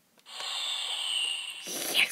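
Small speaker of an electronic Deal or No Deal tabletop game playing a hissing electronic noise effect just after a box key is pressed, turning lower and louder near the end.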